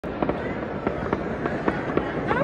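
Fireworks exploding: a dense crackle punctuated by about seven sharp bangs at irregular intervals.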